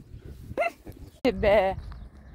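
A woman's voice: a short rising sound about half a second in, then a longer wavering call in the second half, with no clear words.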